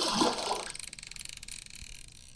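Water splash sound effect: a sudden splash at the start, then a watery rush that slowly fades.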